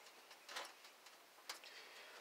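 Near silence with a few faint, sharp clicks, the clearest about half a second and a second and a half in.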